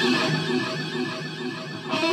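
Electric guitar playing an amplified lead line, with wide vibrato wavering the held notes. It fades a little toward the end before the next phrase.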